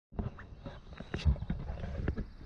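Footsteps of sneakers on an asphalt road: a quick, irregular series of soft scuffs and knocks.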